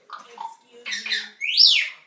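African grey parrot calling: a few soft short sounds, a squawk about a second in, then a loud whistle that sweeps sharply up and back down in pitch near the end.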